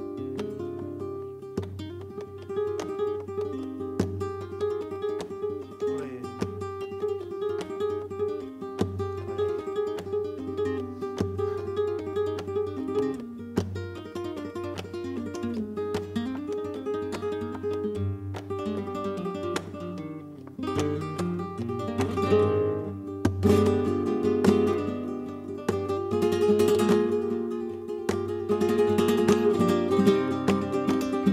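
Flamenco guitar music: plucked melodic runs over strummed chords, louder and busier with dense strumming over the last third.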